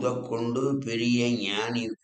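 A man's voice reciting a Sanskrit sloka in a chanting tone, holding long, fairly level notes.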